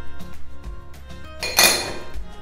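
Background music with plucked notes, and about one and a half seconds in a short clatter as a small plastic weighing dish is set down on the table.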